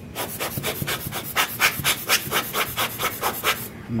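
Hand-squeezed rubber bulb air blower pumped rapidly, about six sharp puffs of air a second, blowing dust off an exposed DSLR sensor.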